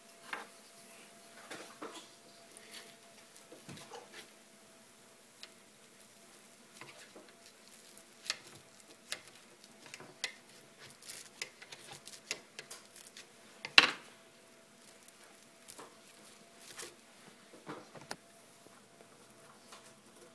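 A spatula scraping and tapping on the non-stick grids of an All-Clad Belgian waffle maker as cooked waffles are pried loose and lifted. Scattered light clicks and scrapes, with one louder knock about fourteen seconds in, over a faint steady hum.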